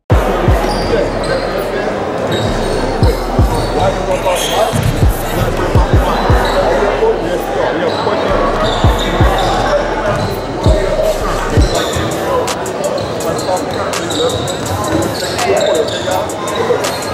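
Basketballs bouncing on a hardwood gym floor, irregular deep thuds from more than one ball, mostly in the first twelve seconds, over a murmur of voices in a large echoing gym.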